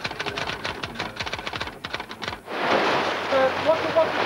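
Fast typing on a typewriter-style keyboard: a dense, irregular clatter of key strikes. About two and a half seconds in it cuts off suddenly to the steady rush of sea surf, with men's voices faintly calling over it.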